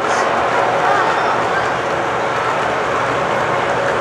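O scale model trains running on the layout's track, a steady rolling noise.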